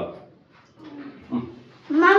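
Short vocal sounds: a brief cry at the start, then two short pitched cries a little past the middle, each lasting a fraction of a second.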